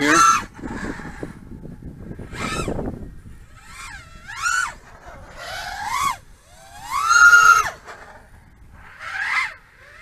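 Brushless motors and propellers of an HGLRC Sector 5 V3 FPV quadcopter on a 6S battery whining through a series of throttle punches. The pitch climbs and drops about five times, loudest about seven seconds in. The manoeuvres are meant to bring on prop wash, which the pilot says can be tuned out by lowering the PID values.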